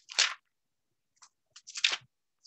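Two short crackling, rustling noises about a second and a half apart, close to the microphone.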